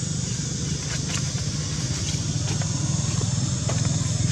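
Steady low rumble of outdoor background noise, with a few faint scattered clicks.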